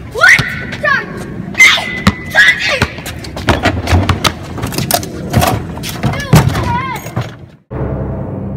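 Boys yelling and shouting excitedly, with sharp thuds of a basketball on a concrete driveway. Everything cuts off abruptly shortly before the end.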